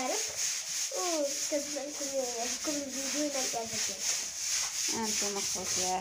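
A girl talking in Moroccan Arabic, with a short pause midway, over a steady high hiss.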